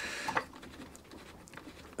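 Faint scraping and clicking of a tight plastic fuel cap being twisted loose on a petrol lawnmower's tank, a little louder in the first half second.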